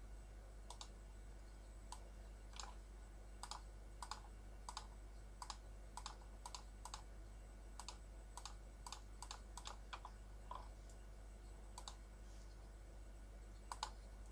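Faint computer mouse clicks, some twenty, coming at an irregular pace, with a louder pair of clicks near the end.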